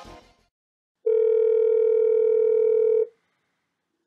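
Telephone ringback tone: one steady two-second ring signal with a slight flutter, heard on the caller's line. It means the called phone is ringing. Background music fades out just before it.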